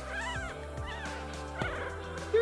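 Newborn dachshund puppy squeaking: three short, high, rising-and-falling mewing cries, over background music.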